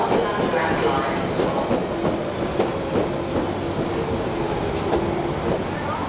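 London Underground 1992 stock Central line train running slowly along the platform: wheels clicking over rail joints under a steady rumble, a steady motor whine in the middle, and a thin high wheel squeal near the end.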